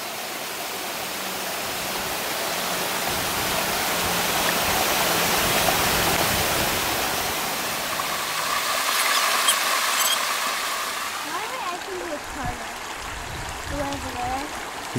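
Creek water rushing and splashing over rocks, a steady rush that swells toward the middle and eases off, with faint voices near the end.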